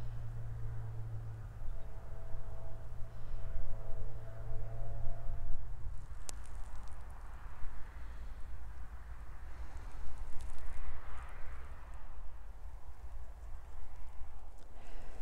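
Wild geese calling in the distance over a low steady hum for the first few seconds, then footsteps in wet mud.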